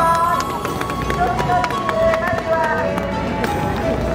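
Voices singing or chanting in long, drawn-out notes, with scattered sharp clacks and a steady low rumble underneath.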